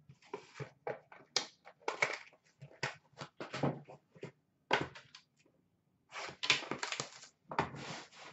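Cardboard boxes and packaging rustling and scraping as a hobby box of trading cards is pulled from its cardboard shipping case and handled: a run of irregular scuffs and crinkles, with a short lull about two-thirds of the way through, then a denser stretch of handling.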